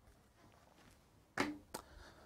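Near silence, then two short clicks about a third of a second apart, a little more than a second in.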